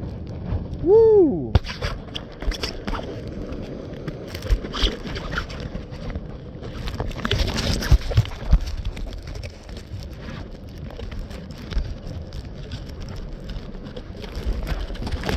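Wind buffeting a phone's microphone high on a parasail, a steady rumble with frequent crackles and clicks from the wind and handling. About a second in, a short whoop from a man's voice that rises and falls in pitch.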